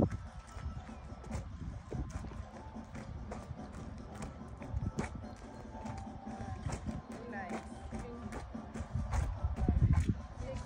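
Dancers' footsteps and shoe scuffs on a concrete driveway: scattered irregular taps and shuffles, with a low rumble that grows louder near the end and faint voices in the background.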